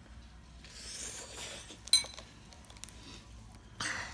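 A metal fork clinks once, sharply, against a ceramic bowl of ramen about halfway through, with a brief ring. Around it are soft breathy sounds, including a sharp breath out near the end as she reacts to the spicy heat.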